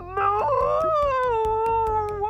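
A cartoon cow's long drawn-out moo, voiced by a performer, held as one call with a slight dip in pitch. A faint music bed plays underneath.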